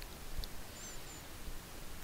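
Faint steady hiss of room tone through a desk microphone, with one small click about half a second in and two faint, brief high chirps near the middle.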